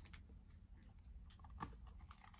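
Near silence: room tone with a faint low hum and one small click about one and a half seconds in.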